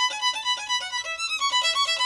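Violin playing a fast passage of short, separate bowed notes in quick succession.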